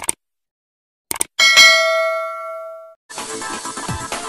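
Subscribe-button animation sound effects: a couple of short clicks, then a bright bell ding that rings out and fades over about a second and a half. Electronic music starts near the end.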